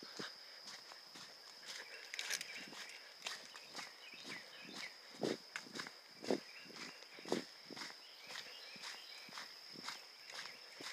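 Footsteps on a dirt trail, about two steps a second, a few landing heavier, over a steady high-pitched whine.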